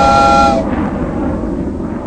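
Train horn ending in a steady chord of several notes about half a second in, over the loud running noise of a moving train, which then fades away.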